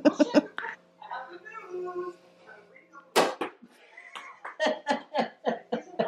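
Cork popping out of a sparkling wine bottle about three seconds in: one sharp, loud pop, followed by a run of shorter sharp sounds.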